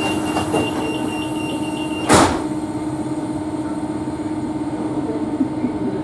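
Renfe series 450 commuter train's sliding passenger doors closing: a rapid high warning beep runs until the doors shut with one loud knock about two seconds in. The train's steady hum goes on underneath.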